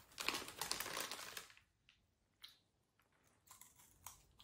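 Plastic snack packet crinkling as it is handled and opened, a dense burst of crackling in the first second and a half, then a few faint clicks.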